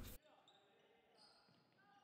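Very faint court sounds of a korfball game in a sports hall: a few short high squeaks, like shoes on the floor, about a second in. The last syllable of a narrator's voice is heard right at the start.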